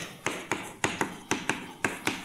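Chalk writing on a blackboard: a quick run of sharp taps and clicks, about four a second, as the chalk strikes and lifts off the board to form letters.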